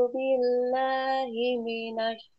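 A woman reciting Arabic from a tajwid primer in a slow chant, drawing each vowel out into a few long, steady held notes with small steps in pitch. It is a beginner's practice of the lengthened vowels (mad) read five beats long.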